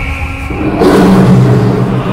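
Action-film background score: loud dramatic music with held tones that swells a little under a second in, with low sustained notes and a noisy surge underneath.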